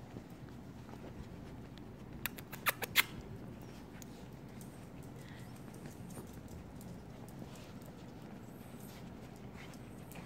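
Small dogs' claws clicking and pattering on a tile floor as they scamper about, with a quick run of about five sharp clicks two to three seconds in.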